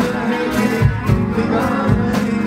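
A live band playing, with guitar over drums.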